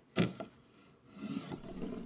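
A short sharp sound near the start, then from about a second and a half in a low rumble of a hand-thrown disk rolling and sliding along a wooden table top.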